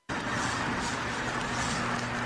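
Science-fiction film soundtrack playing back: a steady spaceship-interior drone with a low hum and a hiss that pulses about twice a second, cutting in abruptly.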